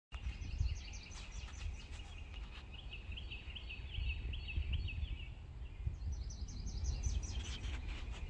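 Songbirds singing in three short runs of rapid, repeated high chirps over a steady low rumble.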